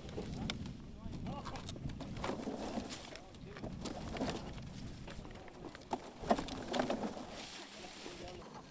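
Indistinct voices talking, with short light clicks and rustles of hand-picking strawberries into plastic clamshells; the sharpest click comes about six seconds in.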